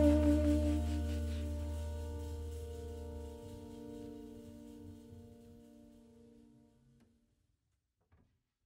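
The closing held chord of a jazz track ringing out and fading away to silence over about six seconds, its low bass note dropping out about three and a half seconds in.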